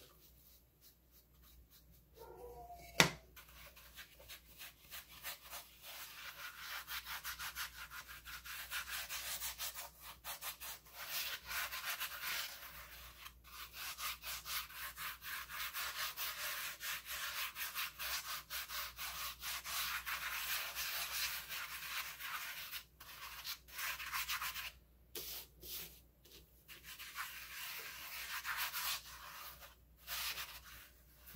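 Rapid dry scrubbing of a bristle brush and hands over a plastic pumpkin coated in gritty paint and baking soda, rubbing the powder into its surface. A single sharp tap comes about three seconds in.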